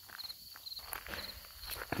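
Crickets chirping steadily in short repeated high trills, with soft scuffs and rustles of footsteps in the weeds close by.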